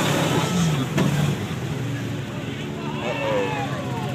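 Lifted pickup truck's engine running steadily as it drives through a mud pit, with one sharp knock about a second in.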